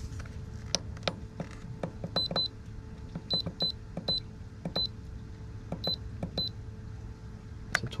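Buttons pressed on a Duratec pond heat pump's control panel, each press answered by a short high electronic beep: about eight beeps, several in quick pairs, with small clicks between, as the set temperature is raised a degree. A steady low hum runs underneath.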